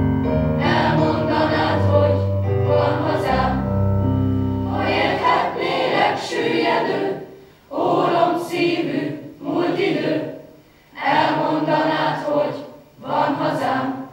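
Mixed choir of young voices singing the final phrases of a song. Sustained low accompaniment notes fade out about five seconds in. The last lines then come as short separate phrases with brief pauses between them, ending near the end.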